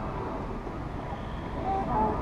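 Steady low rumble of wind on the microphone, with a faint voice near the end.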